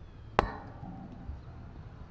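A single sharp knock just under half a second in, with a short ringing tail, followed by a softer low thud a second later.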